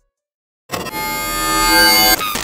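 Silence, then about two-thirds of a second in a sustained musical chord of held notes comes in and grows louder: a logo sound sting.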